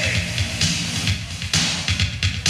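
Loud live band music: drums and a heavy, pulsing low end under dense distorted sound.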